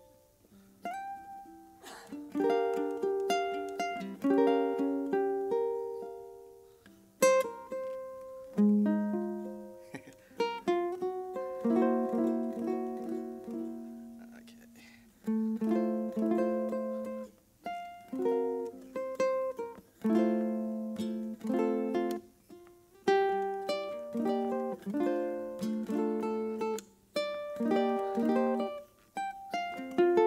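Solo ukulele playing a jazz tune in chord-melody style: plucked chords and melody notes ring out and die away, in phrases separated by short breaks.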